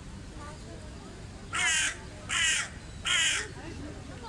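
A crow cawing three times in quick succession, starting about a second and a half in, over a steady low background rumble.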